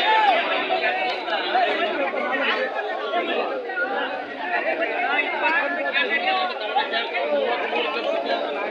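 Crowd chatter: many people talking at once, steady and continuous.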